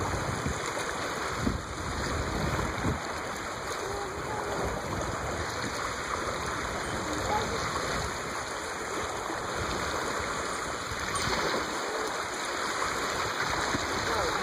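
Steady rush of wind and choppy water lapping on open water, even in level, with faint distant voices.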